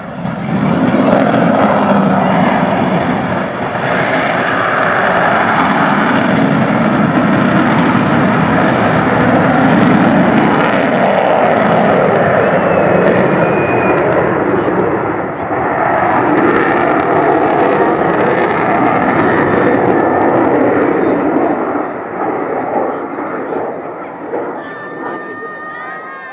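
Avro Vulcan XH558's four Rolls-Royce Olympus turbojets as the delta-wing bomber climbs steeply away and banks overhead. It is loud, wavering jet noise that rises sharply about half a second in, holds with some waxing and waning, and eases near the end.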